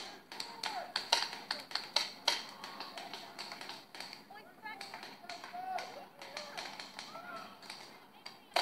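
Paintball guns firing: a quick, irregular run of sharp pops, thickest in the first three seconds, with distant voices calling.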